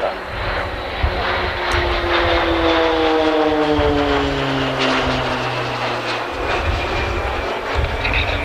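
A pair of Pilatus PC-9 single-engine turboprop trainers passing close overhead. Their engine and propeller tone slides steadily downward in pitch as they go by.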